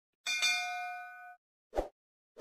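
A bell-like chime sound effect: a ding with a quick second strike, ringing for about a second, followed by a short soft thump near the end.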